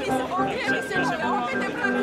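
Background music with an even pulsing beat and sustained notes, with people chattering over it.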